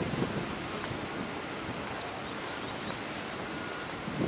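Wind buffeting the camera microphone outdoors, a steady rushing noise with no distinct events.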